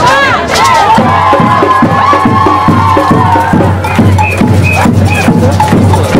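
Street percussion playing a quick, steady beat while a crowd cheers and shouts over it. Four short high notes sound about four to five seconds in.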